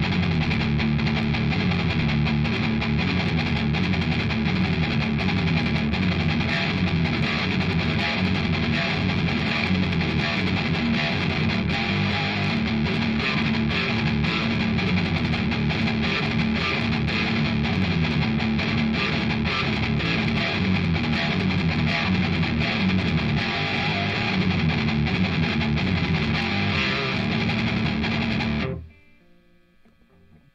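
Explorer-style electric guitar, amplified, playing a repeating riff of low notes and chords, stopping abruptly about a second before the end.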